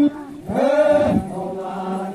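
Voices chanting, with a long held low note in the second half.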